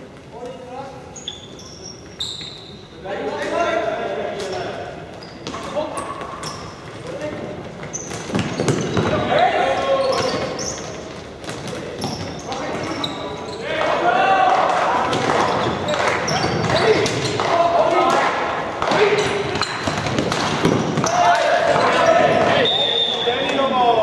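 Floorball game in a sports hall: players calling and shouting to each other over sharp clacks of plastic sticks and ball on the court floor, with the hall's echo. The shouting grows louder and busier in the second half.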